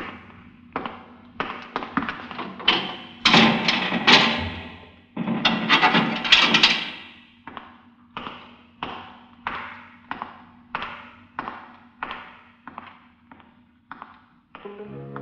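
Dramatic music bridge from an old-time radio drama: heavy percussive strokes at first, then evenly spaced beats about every 0.6 s that fade away.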